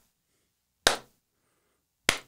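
One hand clap about a second in, part of a slow, sarcastic clap, with near silence around it.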